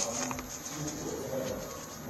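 A dove cooing.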